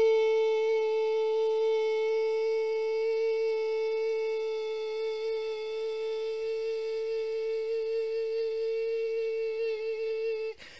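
A single sustained hummed note, held steady on one pitch with a slight waver for the whole stretch, with no other sound beneath it.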